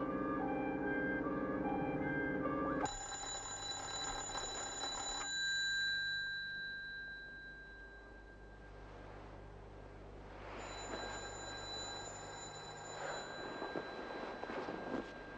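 Background music breaks off about three seconds in; then an electric bell rings in two long bursts about five seconds apart, waking a sleeper.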